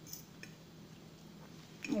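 Metal fork scooping through soft cooked beans on a ceramic plate, with a couple of faint light clicks of the fork against the plate in the first half second.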